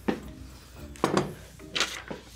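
Three short knocks and thuds of kitchen items being set down on a tabletop, about a second apart.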